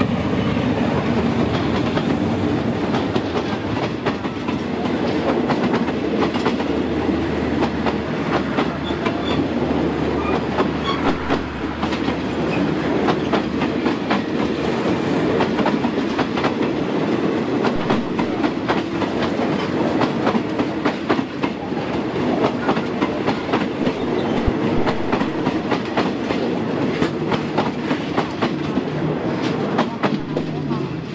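Passenger coaches of a locomotive-hauled train rolling past close by. There is a steady rumble and a continuous run of sharp wheel clicks as the wheels cross rail joints.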